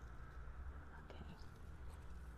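Mostly quiet: a low, steady rumble, with one softly spoken word about a second in.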